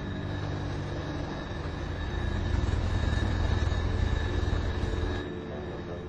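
Jet airliner's engines heard as a steady rushing noise with a thin high whine. It grows louder about two seconds in and falls away abruptly just after five seconds.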